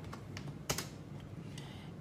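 A few scattered keystrokes on a computer keyboard.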